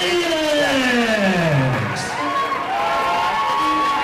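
A ring announcer's amplified voice drawing out a fighter's name in one long call that falls steadily in pitch, ring-announcer style. The crowd then cheers and whoops over music.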